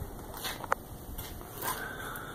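Quiet room noise with faint rustles and one sharp click about three-quarters of a second in.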